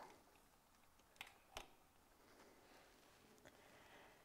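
Near silence with two faint clicks a little over a second in, as a power cable is plugged into the camera.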